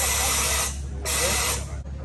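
Two short bursts of air hissing from a scuba regulator's second stage as its purge button is pressed, the way water is blown out of the mouthpiece; the second burst starts about a second in.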